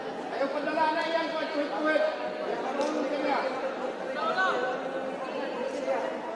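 Several voices calling out and talking indistinctly in a large, echoing hall, the overlapping chatter of ringside onlookers and corners during a boxing bout. A couple of brief sharp knocks sound about halfway and near the end.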